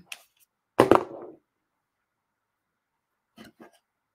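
A single loud thump about a second in, then two faint soft knocks near the end, with near silence between: handling noise at the work table.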